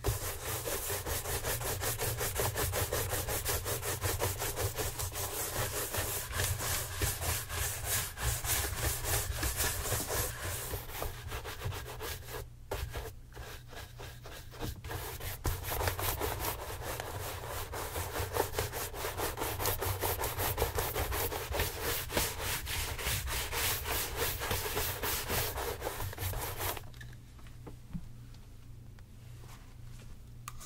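Wood-backed bristle shoe brushes scrubbed fast back and forth over the leather of tassel loafers, a dense run of many short brush strokes. About halfway through, the brushing breaks off twice for a moment, and it stops about a second before the end.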